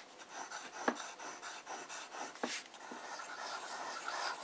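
Cross Apogee fountain pen nib scratching across paper in quick back-and-forth zigzag strokes, with two soft ticks along the way. The nib has just been tuned to write wetter and still gives a slight feedback on the paper.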